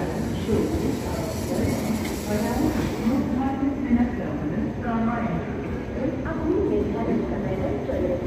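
Railway platform ambience beside a train: a steady low rumble with people's voices over it.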